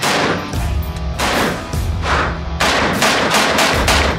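DSA SA58, a FAL-pattern semi-automatic rifle, firing a string of shots at an indoor range, the shots echoing and coming faster in the second half. Rock music with a heavy bass line plays under the shots.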